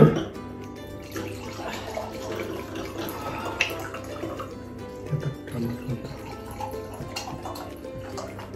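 Red wine poured from a bottle into wine glasses, the liquid splashing and gurgling into the glass, over background music. A sharp knock sounds at the very start.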